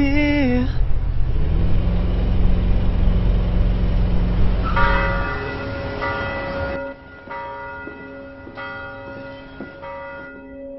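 A singing voice trails off, then a car engine rumbles low for a few seconds. Church bells then toll, a new stroke about every second and a half, each left ringing.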